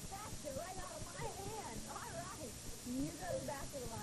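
High-pitched voices of young children calling out in a sing-song way, with no clear words, heard through worn VHS tape audio with a steady hiss.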